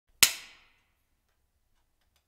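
A single sharp hand clap with a brief ring-out.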